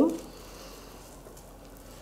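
Faint rustling of damp moss being pressed and wrapped by hand around the roots of a slipper orchid, after a brief voice sound at the start.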